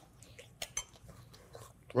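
Quiet sounds of a man eating beef stew: soft chewing, with a couple of faint clicks a little over half a second in.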